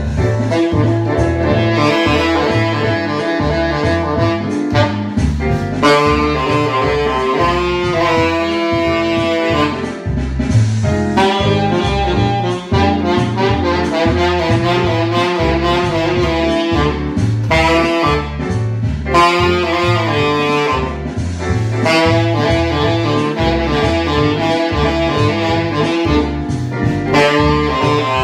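Yamaha YTS-61 tenor saxophone fitted with a Theo Wanne Shiva Destroyer mouthpiece, playing a jazz swing melody over a backing track with a bass line.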